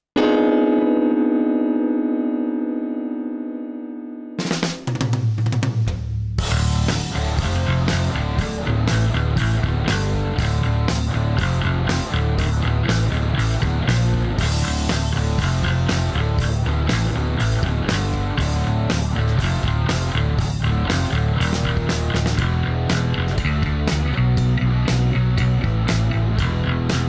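Bass guitar and drums: a Line 6 Variax modelling bass set to its 1961 Fender Jazz model plays a tune over a drum backing. It opens with a held, fading tone; the drums, with steady high ticks, come in about four seconds in, and the bass line about two seconds later.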